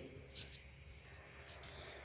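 Near silence: faint room tone with a couple of light handling ticks about half a second in.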